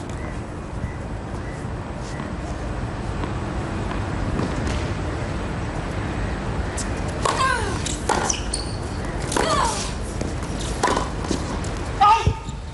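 Tennis rally on a hard court: about four sharp racket strikes on the ball in the second half, roughly a second apart, several with a short grunt from the player hitting. They sit over a steady hiss of outdoor venue ambience.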